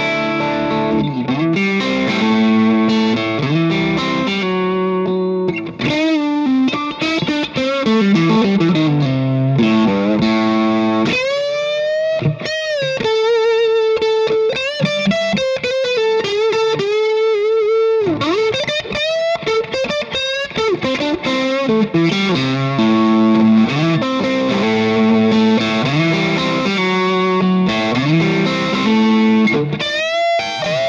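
Electric guitar with single-coil pickups played through a Lunastone Big Fella True Overdrive pedal, giving an overdriven tone. Chordal riffing gives way in the middle to sustained lead notes with bends and vibrato, then chords return. The pedal's boost is switched in partway through.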